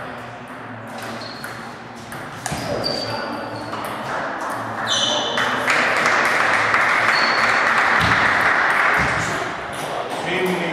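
Table tennis balls clicking off bats and tables in an irregular patter of sharp ticks, from the rally at this table and play at neighbouring tables, in a reverberant sports hall. A few short high squeaks come through, about one every two seconds.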